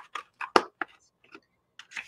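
Paper plate being folded in half and handled: a few short crinkles and taps, with near-silent gaps between them.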